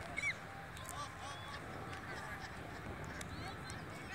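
Faint open-field ambience with a few short, distant high calls, the loudest a brief rising-and-falling one just after the start.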